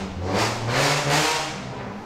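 Infiniti car driving past with its engine revving. The engine note rises and the sound swells to its loudest about a second in, then fades away.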